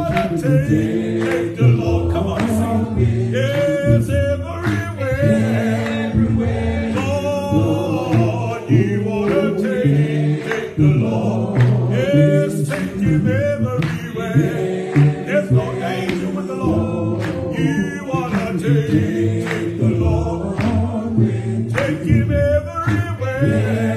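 Gospel-style singing led by a strong man's voice, with long wavering held notes, over other voices sustaining chords beneath.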